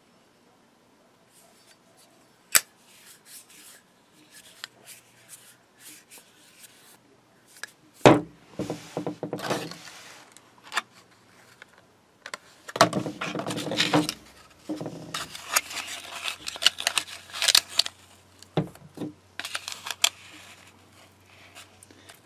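A single sharp metallic clack, as of a Zippo lighter's hinged lid snapping shut, about two and a half seconds in, then irregular crinkling and rustling of a plastic-and-card blister package and cardboard box insert being handled, loudest around eight to ten seconds in and again in a longer spell a few seconds later.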